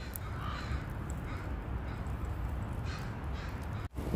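Crows cawing a few times, faint, over a steady low rumble.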